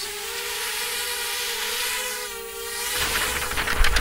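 Extreme Flyers Micro Drone quadcopter hovering, its four small motors and propellers giving a steady whine over a hiss. A low rushing of air grows about three seconds in as the drone climbs.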